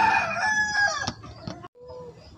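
A rooster crowing: a loud, drawn-out call that is already going at the start, holds, then falls away about a second in, followed by a short knock.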